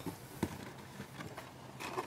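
Blister-packed Hot Wheels cards being pulled from a cardboard case: a sharp plastic click about half a second in, then a few faint ticks over a steady low hiss.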